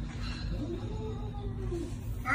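A cat giving one long, low meow that starts about half a second in, rising slightly and then falling in pitch.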